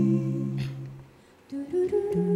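A small group of voices humming a held chord in close harmony, which fades out about a second in. After a short near-silent gap the voices come in again on a new chord, sliding up into it.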